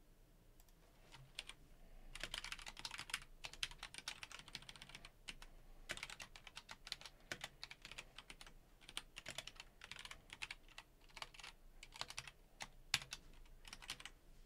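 Computer keyboard typing: quiet runs of quick keystroke clicks in bursts, with short pauses between them.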